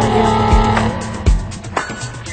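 Background music with low drum hits and bending, sliding tones in the first second.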